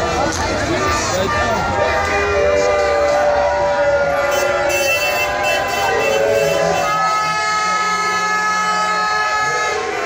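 Several horns sounding in long, overlapping held blasts at different pitches, over a crowd of people shouting and cheering.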